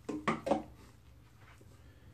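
A brief spoken fragment at the start, then near-silent room tone for the rest.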